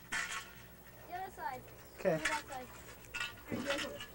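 Light metallic clinks of aluminium sailboat spars, a boom being fitted to its mast, between short spoken words.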